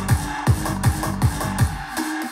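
Electronic dance music played back through Edifier Studio R1600T Plus powered bookshelf speakers, with a deep kick drum that drops in pitch on each beat, about three beats a second.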